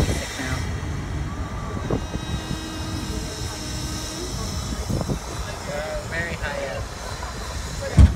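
Amusement ride running with a steady low rumble, wind buffeting the phone's microphone, and faint voices of other riders now and then.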